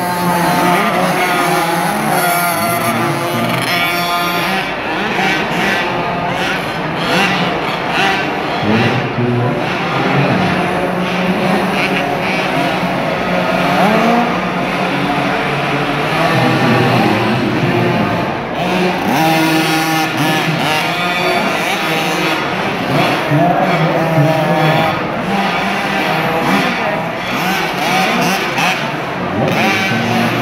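Several 50cc youth dirt bikes racing, their small engines revving up and down over and over as they ride the track.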